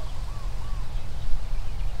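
Wind buffeting the microphone, a steady low rumble, with two faint short chirps from a bird early on.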